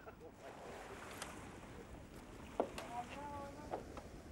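Steady wind and water noise around an outrigger sailing canoe on a lagoon, with a few sharp knocks about a second in, past two and a half seconds and near the end.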